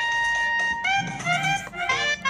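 Upbeat tropical background music led by a saxophone, which holds one long note and then plays a run of short sliding notes from about a second in.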